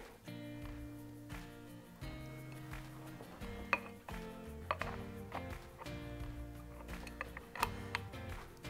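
Background music with held notes. From about halfway through, several sharp metallic clicks come through as drum-brake shoes and their springs are handled and seated on an aluminium brake backing plate.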